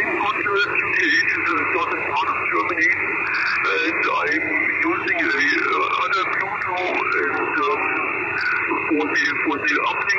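A distant amateur station's voice received in upper sideband over the QO-100 satellite, played through the ICOM IC-705's speaker: narrow, radio-filtered speech over a steady hiss.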